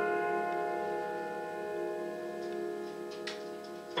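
Freshly tuned Pleyel grand piano: a chord struck just before rings on and slowly fades, with a faint click about three seconds in.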